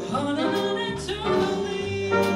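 Live jazz band playing: a female singer's voice over saxophone and trumpet, with bass underneath, holding long notes that change every half second or so.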